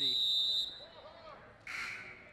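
A referee's whistle blown once, a steady high tone of about two-thirds of a second that fades out. Near the end there is a brief, sharp, hissy noise.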